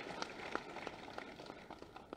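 Audience applause dying away: scattered claps that thin out and stop about two seconds in.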